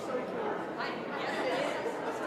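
Indistinct chatter of a congregation, many voices talking at once with no single speaker standing out.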